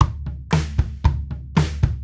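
GarageBand's virtual drummer (the Logan preset) playing a sampled drum-kit groove of kick, snare and cymbal hits. It starts suddenly and keeps a steady beat of about two strong hits a second, with lighter hits in between.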